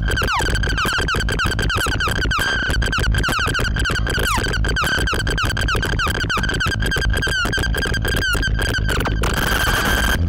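Eurorack modular synthesizer patch, heavily modulated by Mutable Instruments Stages and Marbles: a steady high tone under a dense run of quick, irregular downward pitch sweeps and clicks over a low rumble. About a second before the end the sweeps stop and the sound turns to a hiss.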